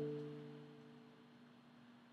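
Acoustic guitar power chord on the low E and A strings at the tenth fret, ringing out and fading away about a second in, then near silence.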